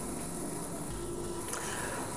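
Steady hiss and hum of a Shimadzu ICP-OES running with its argon plasma lit, with a faint high whine.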